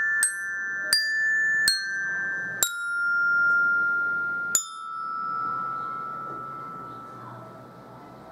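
Metallophone with metal bars struck one note at a time with a single mallet, picking out a slow melody: five notes, each ringing on until the next. The last note, about halfway through, is left to ring out and fade away.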